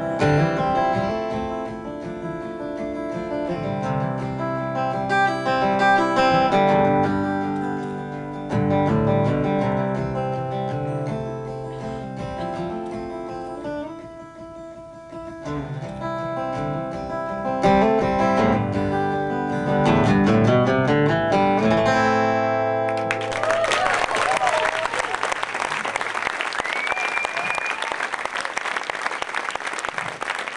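Solo steel-string acoustic guitar playing a run of ringing notes and chords; the piece ends about 23 seconds in, its last chord fading under applause that breaks out suddenly from the audience, with cheering and a whistle.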